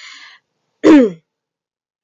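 A woman clears her throat once, a short loud voiced sound falling in pitch about a second in, after a brief breathy hiss at the start.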